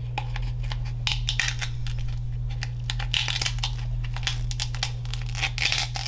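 Close-miked king crab leg shell being cracked and pulled apart by hand: sharp clicks and bursts of crackling, about three clusters, over a steady low hum.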